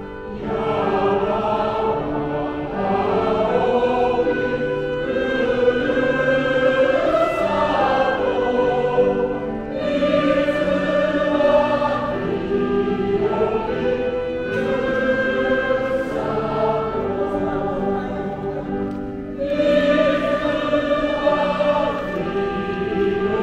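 An elderly men's chorus singing with a soprano, in long sustained phrases with brief breaks about ten and twenty seconds in.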